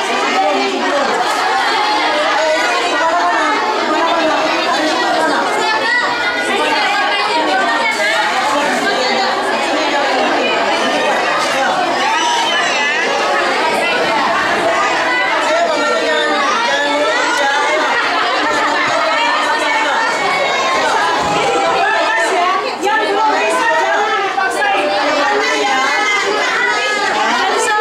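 Many children's voices chattering at once, overlapping without pause.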